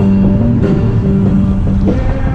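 Background rock music: held guitar notes over drums.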